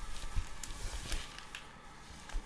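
Cotton piqué polo shirt rustling as it is pulled on over the head and straightened, with a few soft knocks.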